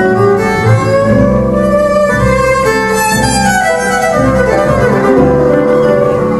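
Gypsy-jazz band playing live: bowed violin and cello in long held, sliding melodic lines over acoustic guitar and double bass.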